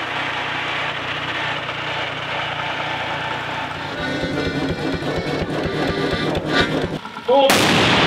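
A vintage tractor engine running steadily. Then a stationary engine firing in rapid, even strokes. About seven and a half seconds in comes a sudden, very loud blast from a field cannon, which rings on to the end.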